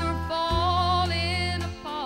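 Woman singing a country song to band accompaniment, her voice wavering with vibrato over bass and sustained chords.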